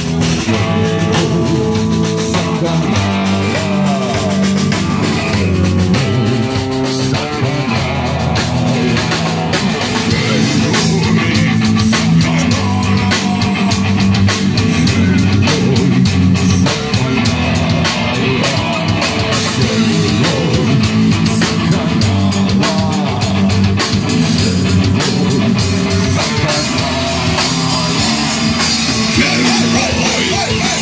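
A live rock band playing loud and steady: electric guitar and drum kit.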